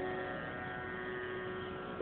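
Sarod strings ringing on after a plucked phrase, with no new stroke: a steady, many-toned sustain from the main and sympathetic strings, slowly fading.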